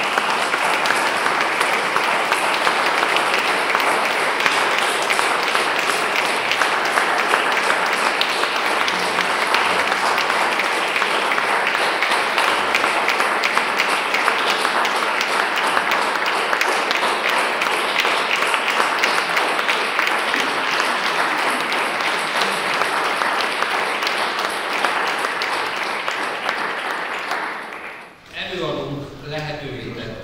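Audience applauding, a steady dense patter of many hands clapping that tapers off near the end.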